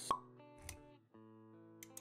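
Animated-intro sound design over quiet background music: a sharp pop just after the start and a short low thud a little later, then the music drops out briefly and comes back with sustained notes about a second in.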